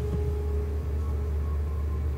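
Dark ambient background music: a low, steady drone with a few long held notes and no beat.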